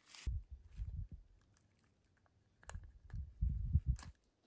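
Faint handling noise: a few small clicks and low bumps as a small screwdriver pries the LED wire leads off a circuit board in a plastic battery box.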